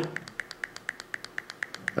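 Rapid clicking of a folding knife's locked-open blade being wiggled up and down, about seven clicks a second, as the blade knocks against its lock face. The clicks are the sign of up-and-down blade play: the lock face and the base of the blade's tang no longer line up, which cannot be cured by tightening the pivot screw.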